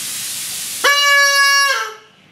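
A toy whistle being blown: a rushing, breathy hiss, then a little under a second in a single steady high whistle note. The note holds for just under a second, then dips slightly and trails off.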